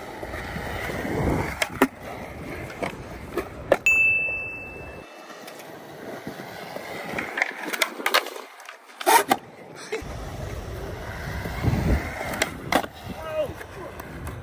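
Mini skateboard's wheels rolling on concrete, with several sharp pops and slaps of the deck as tricks are popped and landed.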